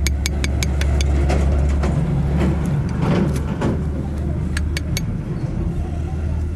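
A motor vehicle's engine running steadily, its low hum easing after about two seconds while a surge rises and fades in the middle. Rapid runs of sharp metallic clicks, about five a second, come near the start and again near the end.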